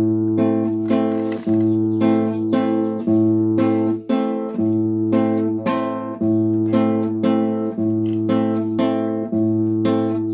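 Nylon-string classical guitar playing an A minor chord in a waltz accompaniment: the open fifth-string bass note, then two upward brushes on the second and third strings. The three-beat pattern repeats about every one and a half seconds.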